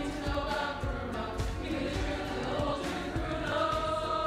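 A school choir of teenage voices singing, settling onto a sustained held chord near the end.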